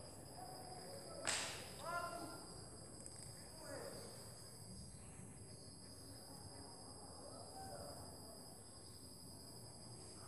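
Quiet room tone with a faint, steady high whine. A single sharp click comes a little over a second in. Faint pencil strokes on paper run under it as the letter is drawn.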